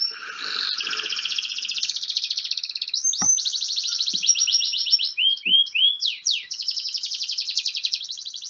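Recording of a domestic canary singing: long runs of fast trills, the same syllable repeated in a rhythm, broken by a few swooping notes a little past the middle.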